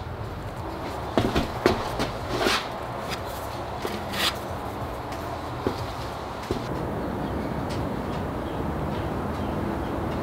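A putty knife scraping and tapping on a plywood board while sawdust-and-glue filler is worked, a handful of short sharp scrapes over the first four seconds. About six and a half seconds in, a steady rumbling background noise comes up and holds.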